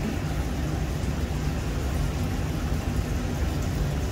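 Steady low mechanical hum with a faint hiss over it, unchanging throughout.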